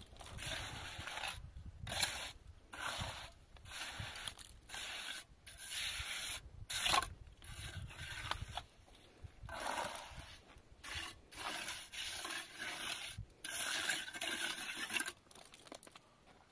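Hand trowel scraping and smoothing plaster over a roof, in repeated short strokes about one a second, stopping shortly before the end.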